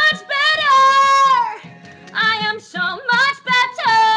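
A woman singing in a strong belted chest voice: a high note held for about a second that slides up into place and falls away at its end, a run of shorter notes, then another long note taken near the end.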